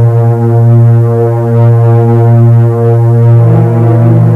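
Background film music: a low droning chord held steadily, shifting to a new chord about three and a half seconds in.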